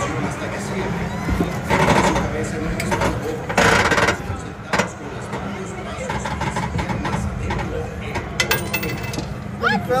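A phone being handled and tucked into a pocket, with fabric rustling and rubbing against the microphone in two louder bursts about 2 and 4 seconds in. A light metallic clink of a coin comes near the end, over background voices and a steady hum.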